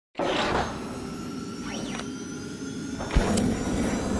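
Intro logo sting made of whooshes and a sweeping tone, with a sudden low hit about three seconds in followed by a bright shimmer.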